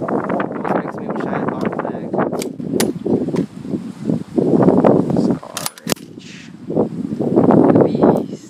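Airsoft SCAR-H rifle firing sharp single shots at irregular intervals, with a quick run of three just before six seconds in.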